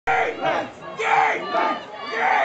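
Loud shouting from several voices in three short bursts, the yelled calls of players and spectators around a football line of scrimmage just before the snap.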